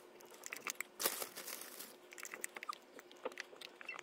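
Faint crackling and rustling of loose jungle-mix substrate being handled and pressed into an acrylic enclosure by hand, with scattered small clicks and a slightly louder crackle about a second in.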